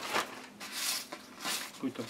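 Plastic bag and paper wrapping rustling and crinkling in a few short bursts as they are pulled off a shotgun.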